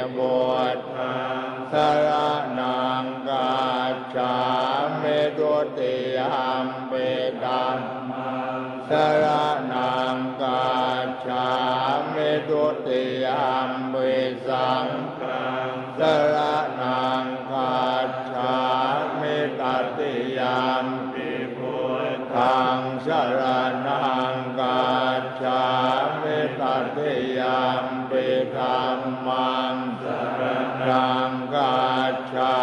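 A chorus of Thai Buddhist monks chanting Pali verses in unison, a continuous recitation held on a nearly level pitch.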